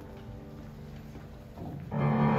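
A quiet pause in the piano music: faint notes ringing on and dying away, then the piano starts again softly near the end and comes in loudly right at the close.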